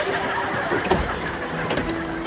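Steady running noise of a passenger train carriage in motion, with a knock about a second in and a few sharp clicks near the end as the inspector slides open the compartment door.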